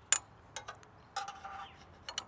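Light metallic clicks and taps of a steel U-bolt being slid up through a trailer's steel drawbar, the sharpest click about a tenth of a second in, followed by a few smaller clicks and a brief scrape.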